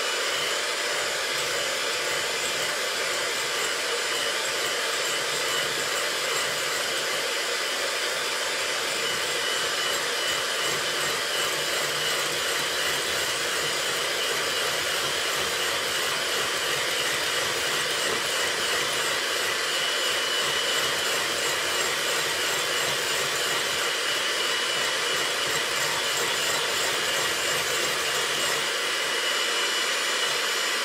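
Electric hand mixer with a single whisk beater running steadily at constant speed, beating egg yolks in a glass bowl until they lighten in colour. The motor's even whir carries a faint high whine.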